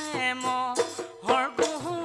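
Assamese Bihu song: a woman singing with ornamented, bending notes over strokes of a dhol drum.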